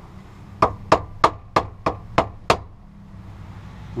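Hammer striking a screwdriver set against the fuel pump module's lock ring to knock the ring round and loosen it: seven sharp metallic taps, about three a second, starting about half a second in and stopping after two and a half seconds.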